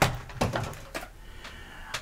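Beer cans being set down: a sharp knock as a shrink-wrapped pack lands, then a lighter knock about half a second in, followed by faint handling noise.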